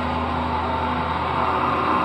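Live heavy metal band through a venue's PA, recorded from the audience: low guitar and bass notes held and ringing on, with no drum hits.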